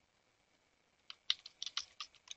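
Computer keyboard typing: after about a second of quiet, a quick run of sharp keystrokes.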